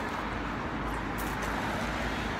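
Steady noise of road traffic going by, a continuous low rumble with no single distinct event.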